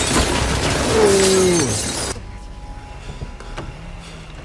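Film action-scene sound: a loud, sustained crash with glass shattering and a falling tone about a second in. It cuts off suddenly about two seconds in, leaving a much quieter background with a single click.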